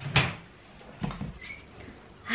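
A kitchen unit door being shut: a sharp knock just after the start, then a softer knock about a second later.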